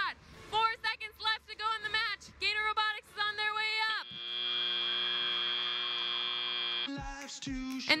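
The end-of-match buzzer at a FIRST Robotics Competition field sounds one steady, many-toned buzz for about three seconds as the match clock reaches zero, then cuts off sharply.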